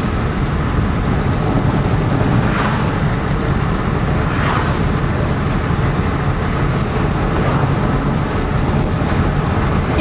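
Steady engine and road noise heard inside the cabin of a moving car.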